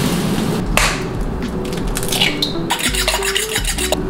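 Metal utensils clinking and scraping against a pan while cooking, with a run of quick scraping clicks about three seconds in.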